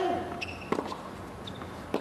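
Tennis rally on a hard court: a racket strikes the ball at the start and again near the end, with the ball bouncing about two-thirds of a second in. Short sneaker squeaks come in between.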